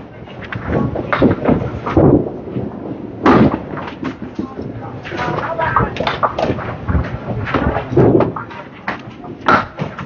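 Candlepin bowling alley din: irregular sharp knocks and clatters of balls and pins, with people talking in the background.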